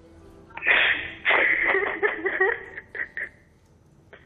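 A person sobbing over a telephone line, in uneven heaving bursts with the narrow, muffled tone of a phone call. It starts about half a second in and fades out after about three seconds.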